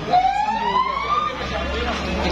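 Emergency-vehicle siren starting a wail, one tone climbing steadily in pitch for just over a second, over the voices of a crowd.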